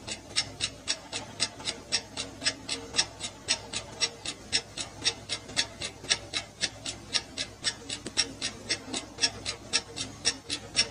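Countdown timer sound effect: a steady run of sharp clock-like ticks, about four a second, counting down the time left to guess.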